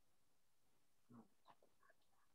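Near silence on an open call line, with a few very faint, brief, pitched sounds about a second in.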